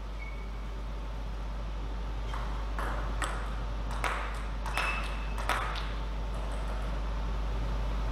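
Table-tennis ball bouncing and clicking about half a dozen times, irregularly spaced, over a steady low hall hum.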